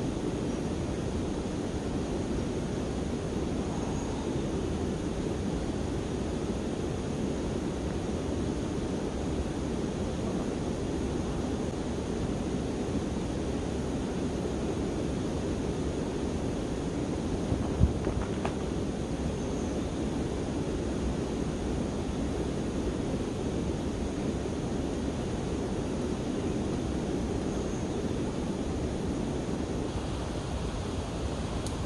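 Steady rushing outdoor noise with no clear pitch, like wind or running water, with a single sharp knock a little past halfway.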